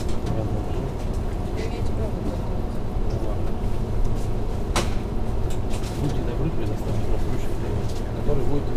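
Faint, indistinct voices over a steady low hum, with one sharp click about five seconds in.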